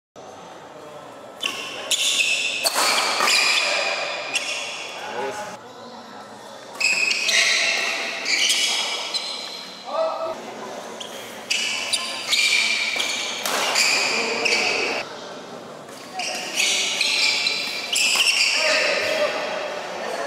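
Doubles badminton rallies in a large hall: rackets hitting the shuttlecock with sharp strikes, shoes squeaking high on the court mat, and players' shouts between points.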